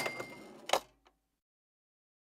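Cash-register 'cha-ching' sound effect: a bell ring fading out, then a sharp clack about three-quarters of a second in, after which the sound cuts off completely.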